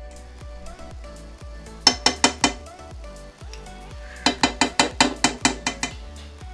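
A metal spoon clinking against a small ceramic bowl as margarine is spooned out: four quick clinks about two seconds in, then a faster run of about ten from about four seconds. Background music plays throughout.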